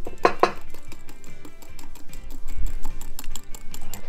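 Fork beating egg yolks and melted ice cream in a glass Pyrex measuring cup, clicking rapidly against the glass, over background music.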